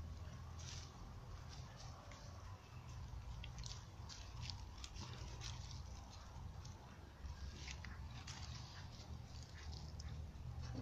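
A small dog chewing and crunching fish: an irregular string of short crunches and clicks over a steady low rumble.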